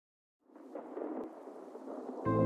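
A rushing, noise-like atmospheric sound effect fading in after about half a second of silence at the very start of a progressive house track, with one brief click a little over a second in.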